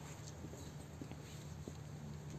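Faint footsteps on paving: a few soft taps about two-thirds of a second apart over a low, steady outdoor hum.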